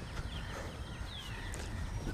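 Small birds chirping in short, quick calls over a low steady rumble.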